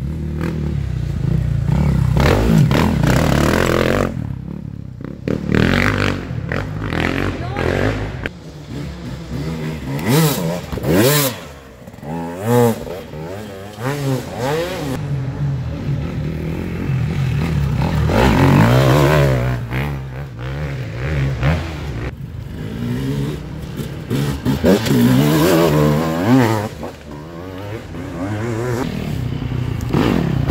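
Enduro dirt bike engines revving up and down as riders work through a tight woodland trail, the pitch rising and falling with each burst of throttle. The engine noise swells in stretches as bikes come closer, and one bike is loud near the end as it rides toward the listener.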